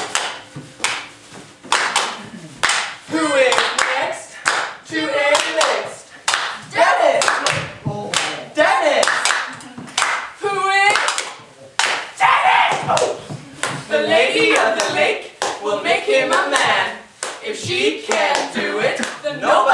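Actors' voices on a stage, speaking and calling with wide, theatrical swoops in pitch, broken up by sharp handclaps.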